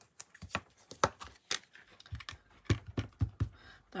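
Irregular light taps and clicks from hand-stamping: a rubber stamp being inked and pressed again onto card stock, with paper being handled.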